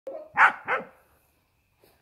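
A dog barking: a short lower note leads straight into two loud, sharp barks in quick succession, all within the first second.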